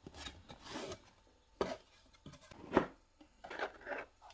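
Cardboard packaging rubbing and scraping as a clipper's box is opened and the clipper is lifted out of its tray. It comes in several short scrapes, the loudest a little under three seconds in.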